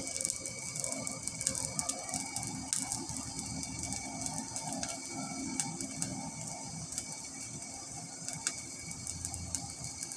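Charcoal forge fire crackling with frequent small pops as sparks fly, over a faint steady hum. The chisel blades are heating in the coals ahead of hardening by quenching in oil.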